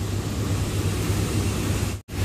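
Steady low rumble under an even hiss of outdoor background noise, breaking off sharply right at the end.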